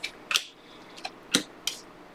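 Glossy Panini Prizm trading cards being flipped through one at a time by hand, each card slid off the stack with a short, sharp click, about five in two seconds.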